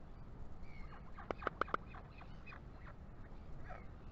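Northern royal albatross chick clacking its bill, a quick run of about four sharp clacks about a second and a half in, with short nasal calls around it.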